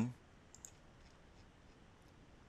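A couple of faint computer mouse clicks about half a second in, over quiet room tone.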